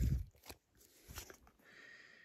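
Soft handling noises of trading cards taken out of a torn-open foil booster pack: a dull bump at the very start, then a few faint clicks and rustles.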